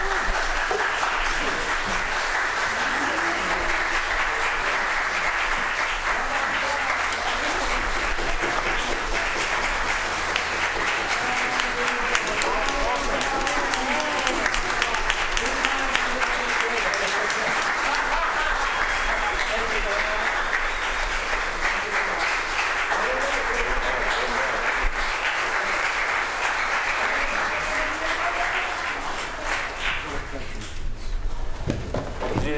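Congregation applauding steadily and at length, easing off slightly near the end, with voices heard through the clapping.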